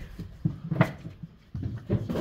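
Vinyl records and cardboard boxes being handled: a few short knocks and rustles, the sharpest just under a second in.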